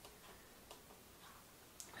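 Near silence with a few faint, short clicks: buttons being pressed on the back of a DSLR camera to cycle the screen display from the info view to the full image.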